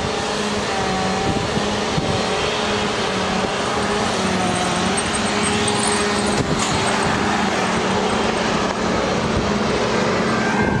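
Road traffic: a vehicle engine drones steadily close by over a constant rush of traffic noise.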